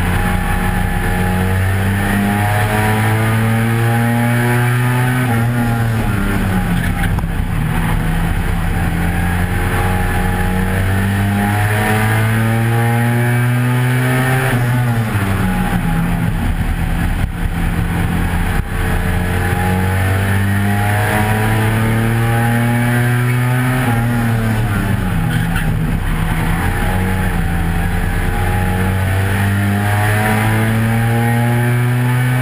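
A 1300 cc stock car's engine racing, heard from inside the cockpit. Its pitch climbs slowly, then falls back sharply three times, about every ten seconds, as the driver lifts off for the bends.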